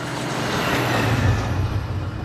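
A large truck driving fast on a dirt road: engine rumble and tyre noise swell to a peak about a second in, then ease slightly as it moves away.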